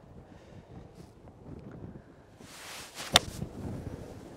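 Golf iron striking a ball off fairway turf: one sharp click about three seconds in, over light wind on the microphone.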